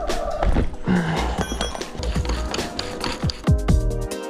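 Background electronic music with a heavy, deep bass beat.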